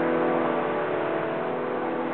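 A piano chord ringing on and slowly dying away, its held notes fading.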